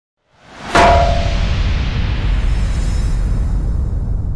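Logo-intro sound effect: a rising whoosh into one sharp, ringing metallic hit less than a second in, followed by a loud, low rumbling tail that carries on.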